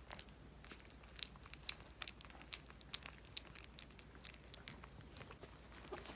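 Yorkshire terrier puppies eating soft, runny pâté from a plate as their first solid food: faint, irregular wet smacking and lapping clicks, several a second.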